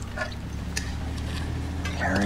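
Film soundtrack ambience: a low steady hum with a few faint clicks and rustles between lines of dialogue.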